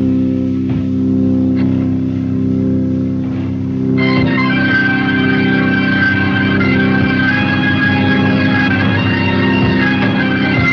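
Hammond organ holding a long sustained chord to open a band number. About four seconds in, other instruments join and the sound grows fuller and brighter.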